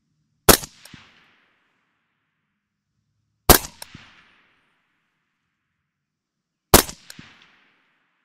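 Three single shots from a suppressed 5.56 mm Colt 6920 AR-15 carbine with a SureFire suppressor, fired about three seconds apart, each followed by a short echo that dies away within half a second.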